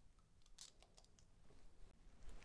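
Near silence, with a few faint light clicks from the fountain pen's plastic converter and barrel being handled.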